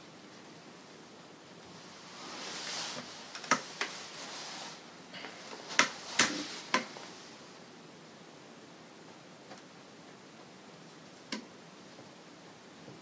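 Rustling for a few seconds, with a handful of sharp clicks and taps bunched in the middle and one more tap near the end, as the painter shifts back from the easel and handles his brush and painting things.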